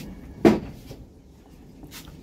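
A single dull knock about half a second in, from an object set down on a wooden kitchen counter.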